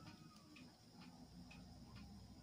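Sony TCM-30 cassette recorder's tape mechanism running in fast-forward on its newly fitted rubber drive belt, very faint, with a few light ticks. The reels are turning freely rather than stalling, a sign that the new belt is gripping.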